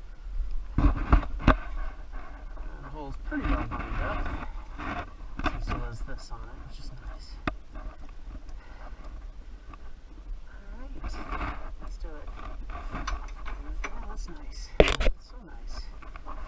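Backhoe hydraulic hose quick couplers being handled and pushed onto the tractor's hydraulic ports, giving scattered metallic clicks and clacks. A single sharp metallic clack near the end is the loudest sound.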